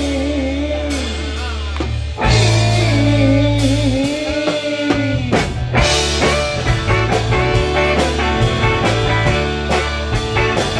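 A rock band playing live, with electric guitar, bass, drums, keyboard and saxophone under a sung lead. The bass drops out briefly around the middle, and the drum strokes come through more clearly after that.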